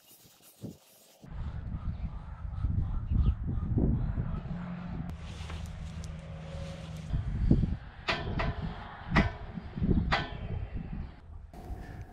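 Low wind rumble outdoors, with several sharp metallic knocks and clanks in the second half as the steel pipe gate is handled on its hinge hardware.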